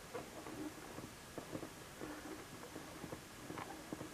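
Quiet room tone with a few faint, scattered small ticks and rustles.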